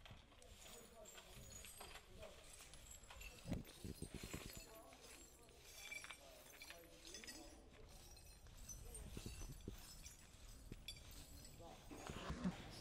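Near silence: faint background ambience with a few faint scattered knocks and clicks.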